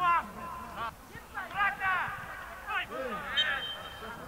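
Men's voices shouting short calls on a football pitch, several in a row.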